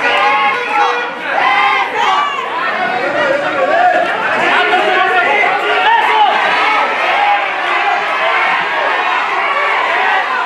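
Lucha libre crowd shouting and yelling at ringside, many voices overlapping, some of them high.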